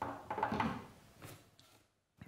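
A cardboard shipping box being picked up and handled on a wooden table: a short scraping, rustling handling noise in the first second, then a faint tap.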